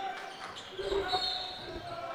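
Basketball being dribbled on a hardwood gym court, over low crowd murmur, with a brief high-pitched tone about a second in.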